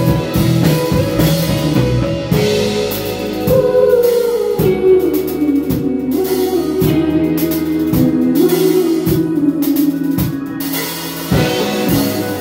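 A live indie rock band plays an instrumental passage: electric guitars carry a wandering melodic line over a drum kit keeping a steady beat.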